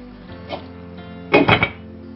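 Glass pot lid with a metal rim set down on a metal cooking pot to cover it for simmering: a light tap about half a second in, then a quick clatter of about three ringing clinks at about one and a half seconds. Steady background music underneath.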